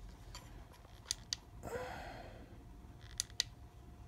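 Two pairs of quick, sharp plastic button clicks, one about a second in and one just past three seconds, as the solar LED spotlight is switched up to its maximum setting. A soft rustle of handling falls between them, and a faint steady electronic whine comes in during the second half.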